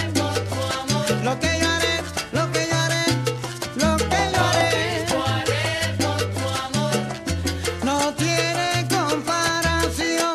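Salsa band recording playing: a repeating bass line under dense, steady percussion and pitched instrument lines.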